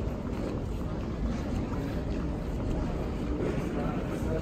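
Steady low rumble of wheeled suitcases rolling over a terminal floor, mixed with footsteps.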